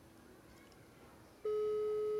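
Outgoing phone call heard through the phone's speaker: faint hiss, then about a second and a half in a single steady ringing tone starts and lasts about a second, the call still unanswered.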